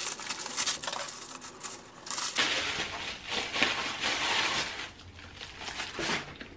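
Plastic packaging crinkling and rustling as a purse is pulled out and unwrapped, densest in the first two seconds and easing off near the end.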